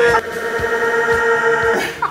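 A man's long, high-pitched victory yell, held on one note for nearly two seconds and breaking off just before the end.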